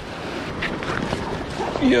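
Steady wind on the microphone and the wash of the sea, with a few faint knocks and rustles as a backpack is handled and picked up.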